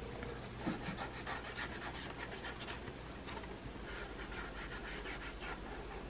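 Glue pen tip scratching and rubbing along paper flaps as glue is spread, in two short spells of quick strokes, one about a second in and one near the end; faint.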